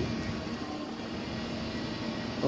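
Steady background hum with faint steady tones, no clear events.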